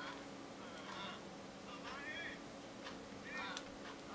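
Film dialogue and soundtrack playing faintly through the small speakers of a Samsung Galaxy Note and a Galaxy S2 at once, the two phones out of step with each other. The voices sit high with little low end, over a steady faint hum.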